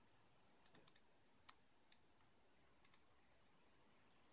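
Faint computer mouse clicks, about seven short sharp ticks at uneven intervals, a cluster of three about a second in and a close pair near the end, as photos are zoomed and paged in a photo viewer.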